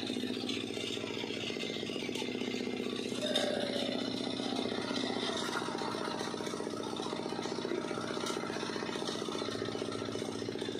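An engine running steadily, a constant mechanical drone with a fast, even beat.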